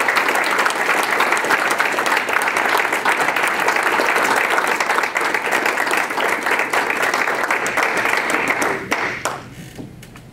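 Audience applauding, many hands clapping together; the applause dies away about nine seconds in.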